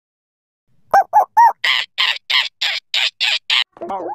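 Blue, the cartoon puppy from Blue's Clues, vocalising: three short, high barks about a second in, then a quick run of about eight breathier yaps, roughly four a second.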